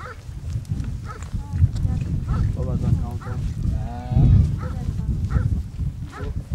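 Goats bleating, with one long quavering bleat about four seconds in, over a low rumble.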